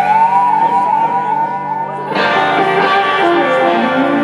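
Live rock band playing an instrumental break, with an electric guitar lead playing bent, wavering notes over bass and drums. About two seconds in, the band comes in fuller and brighter.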